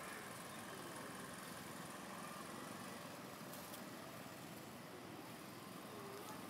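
Faint, steady outdoor background ambience with no distinct event.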